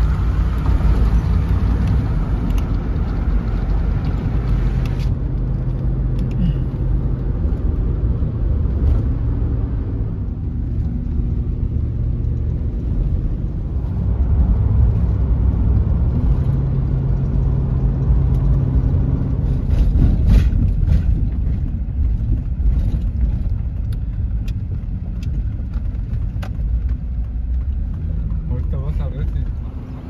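Road and engine noise inside a moving car's cabin at highway speed: a steady low rumble with an engine hum under it.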